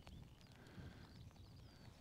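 Near silence: faint outdoor ambience with a few very faint, brief high chirps.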